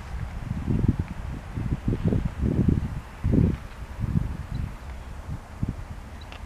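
Wind buffeting the microphone in irregular gusts, over a steady low rumble from distant diesel freight locomotives working under power.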